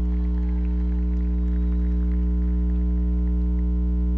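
Steady electrical mains hum, a low buzz with many overtones and an unchanging level. Faint scattered sounds lie beneath it.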